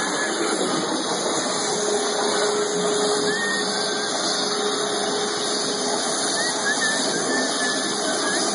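Waterjet cutting machine running steadily as its high-pressure jet cuts through a clamped sheet, an even hiss of water spray. A faint steady tone sits under it from about two seconds in to about six.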